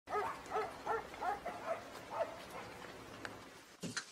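A dog barking, about seven quick barks in the first two seconds, then fading. A knock on a wooden door comes right at the end.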